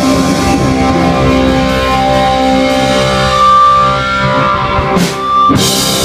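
Live rock band playing loud: electric guitar with held, ringing notes over bass and drum kit, with two drum crashes near the end.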